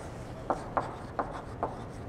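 Chalk writing on a blackboard: about six short tapping and scraping strokes as letters are written.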